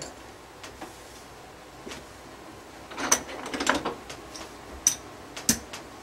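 Casino chips being picked up and set down on a felt craps layout: a cluster of soft clicks and clacks about halfway through, then two sharp single chip clinks near the end.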